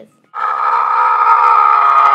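A girl screaming: one long, loud, steady scream that starts about a third of a second in.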